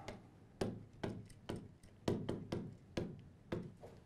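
Stylus tapping and clicking against a touchscreen display while a word is hand-written on it: about ten short, light clicks at irregular intervals.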